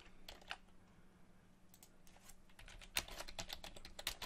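Computer keyboard being typed on: a few scattered keystrokes, then a quicker run of them in the last second or so.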